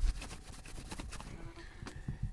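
Faint handling noise: scattered light clicks and rustles of a phone in a clear plastic case being picked up and handled.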